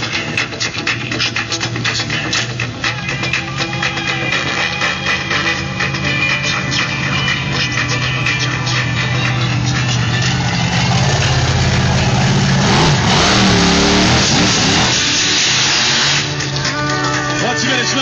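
Bigfoot monster truck's engine running and revving as the truck drives close by, rising to its loudest past the middle of the stretch, over background arena music.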